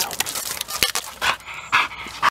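Bull terrier panting hard in quick, noisy breaths during energetic play, with one sharp click a little before the middle.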